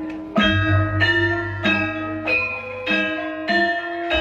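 Javanese gamelan ensemble playing: bronze metallophones and kettle gongs struck in an even beat about every 0.6 s, each stroke ringing on. A low tone sustains beneath from about half a second in.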